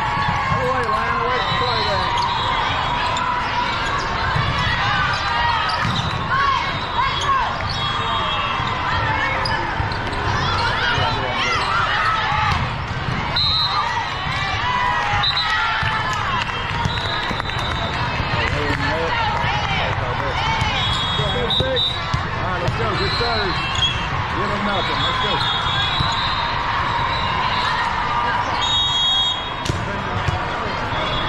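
Busy indoor volleyball hall: many voices talking and calling across the courts, with volleyballs being hit and bouncing on the hard court floor at intervals.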